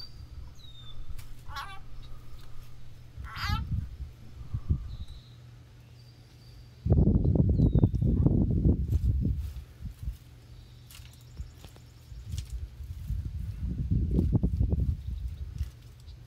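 Outdoor ambience: small birds give short chirping calls in the first few seconds, and two bouts of low rumbling noise on the microphone, typical of wind gusts, come about seven seconds in and again near the end.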